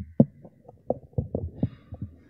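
Irregular dull thumps and knocks, several a second and uneven in strength.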